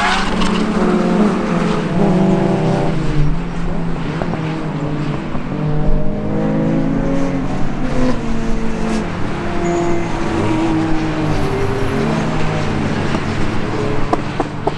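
Racing car engines running at speed on the circuit, several notes overlapping and rising and falling as the cars accelerate and change gear. A tyre squeal dies away at the very start.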